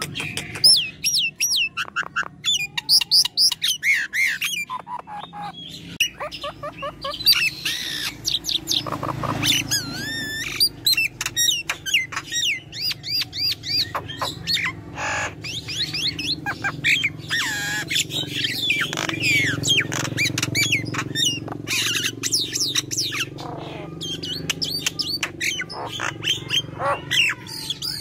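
A myna singing a long, unbroken, varied song: whistled notes that swoop up and down, mixed with harsh squawks and sharp clicks.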